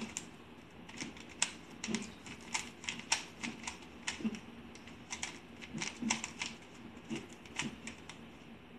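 Plastic 3x3 Rubik's cube being turned by hand, its layers clicking in a quick, irregular series of about two to three clicks a second as the same two-move turn sequence is repeated over and over.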